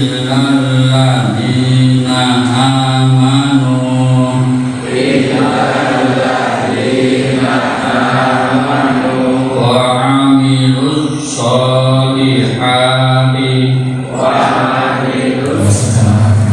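A man's voice chanting into a microphone in long, held melodic phrases, with short breaks for breath between them. It is typical of a Quran recitation opening a religious study gathering.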